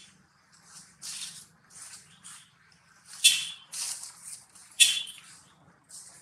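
Dry leaf litter rustling and crackling in a string of short bursts as macaques shift and groom on it, the loudest crackles about three and five seconds in.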